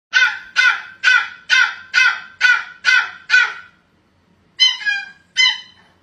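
A small puppy barking in high, squeaky yips that sound like a squeaky toy: eight in a quick series at about two a second, a short pause, then two more. They are sassy protest barks at the owner leaving for work.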